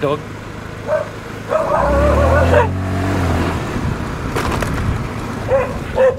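Motorcycle engine running at low speed, its note swelling and then falling away about two seconds in, while dogs bark close by, with one longer wavering bark or howl around two seconds in and short barks near the start and end.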